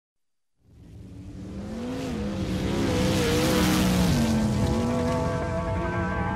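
Race car engines fading in and building, their pitch sliding up and down, as part of a song's intro; a sustained music chord comes in about five seconds in.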